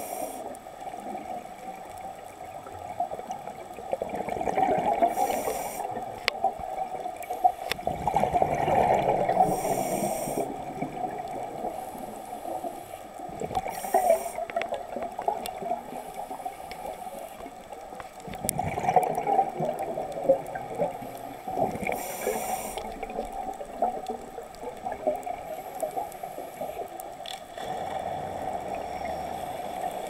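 Scuba regulator breathing heard through an underwater camera housing: muffled bubbling swells of exhaled air about every four to five seconds, with short hisses between them.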